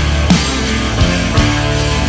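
Rock song with a drum kit played hard, cymbals ringing over guitar and bass, with heavy drum strikes about a third of a second in, at about one second and again near one and a half seconds.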